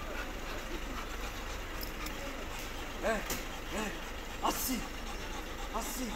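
Belgian Malinois barking in about four short, sharp barks from about three seconds in, over a steady low background hum.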